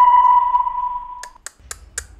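Electronic sound effect: a steady beep tone held for about a second and a half, then a run of sharp ticks, about four a second.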